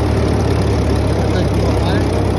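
Farmall B tractor's four-cylinder engine running at a steady speed as the tractor drives with a Woods belly mower.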